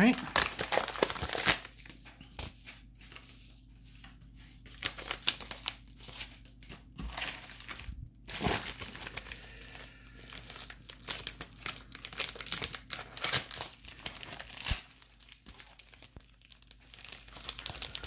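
Plastic mailer packaging being handled, crinkling and rustling in irregular bursts.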